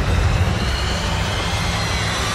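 Film sound effects of a violent debris storm: a loud, dense low rumble with noise across the whole range. Faint high tones rise slowly above it.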